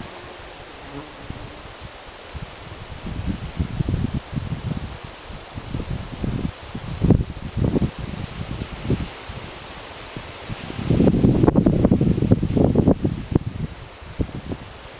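Gusts of wind buffeting the microphone in irregular low rumbles, starting a few seconds in and strongest near the end. The buzz of a flying insect at the flower is heard with them.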